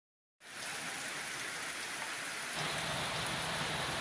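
Steady heavy rain falling, an even hiss that starts a moment in and gets fuller and deeper about halfway through.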